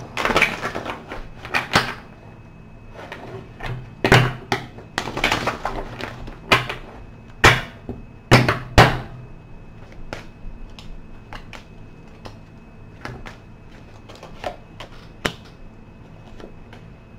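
A deck of tarot cards being shuffled and handled on a table: a string of sharp snaps and rustling riffles, loudest in the first nine seconds, then lighter scattered clicks.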